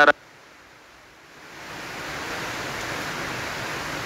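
Steady hiss of noise, faint at first and then swelling about a second in to a constant level.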